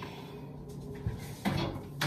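Quiet kitchen handling sounds: a light click about a second in, then a louder knock of a door shutting about a second and a half in.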